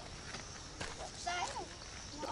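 A few light footsteps on stone slabs and a dirt trail, with a faint voice calling briefly about halfway through.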